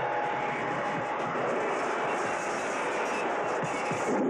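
Horror-film trailer soundtrack: a steady, dense rushing wash of noise with a single held note running through it.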